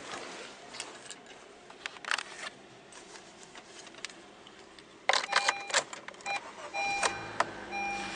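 Keys jangling at the ignition of a 2017 Honda Fit, with a few dashboard warning beeps as the ignition comes on. About seven seconds in, the 1.5-litre four-cylinder engine starts promptly and settles into a steady idle.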